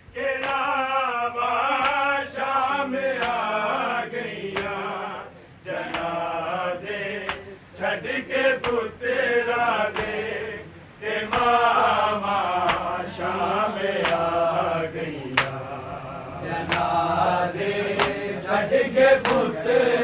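Group of men chanting a Punjabi noha, a Shia lament, with no instruments. The sung lines rise and fall, with short breaks between phrases, and sharp taps sound now and then.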